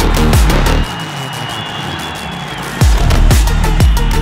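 Background electronic music with a heavy kick-drum beat. The beat drops out for a short breakdown with a high held synth note about a second in, then comes back near the three-second mark.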